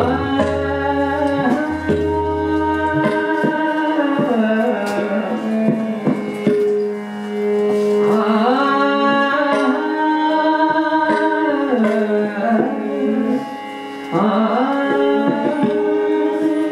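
Hindustani classical vocal in raag Bairagi Bhairav: a woman's voice sings long held, gliding phrases, with harmonium accompaniment and tabla strokes, the tabla's deep bass drum booming in the first few seconds. The voice drops out briefly before rising into a new phrase near the end.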